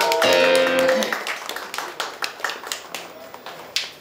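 An electric guitar chord rings out for about a second, then a few scattered sharp claps follow.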